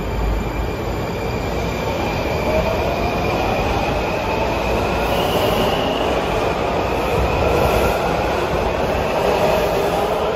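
Washington Metro subway train pulling out of an underground station: a continuous rumble of wheels on rail, with a motor whine that rises in pitch as it gathers speed.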